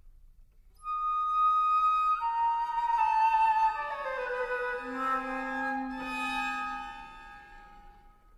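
Flute and string trio playing contemporary chamber music. After a moment of near silence the flute enters on a high held note, and string tones join it and slide slowly downward in pitch, with a low held note in the middle. The sound thins out and fades near the end.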